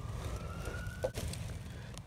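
Faint distant siren: a thin tone slowly rising in pitch that fades out a little past a second in, over a steady low rumble, with one click about a second in.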